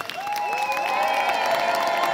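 Audience applauding and cheering, with many high whoops and calls rising in over the clapping about half a second in.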